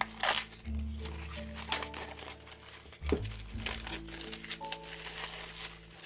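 Plastic shrink-wrap crinkling and tearing as it is pulled off a wooden art panel by hand, in sharp irregular crackles, over steady background music.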